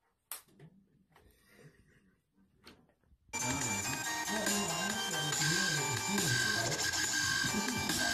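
A single sharp click as a USB killer is pushed into a laptop's USB port, followed by faint handling sounds. About three seconds in, loud music with a wavering melody line starts abruptly, playing from a video on the laptop.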